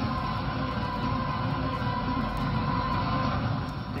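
Background music from a television, a dense, steady passage with a held high note that stops shortly before the end.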